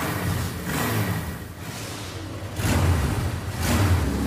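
Motorbike engine running low and revving, swelling twice in the second half.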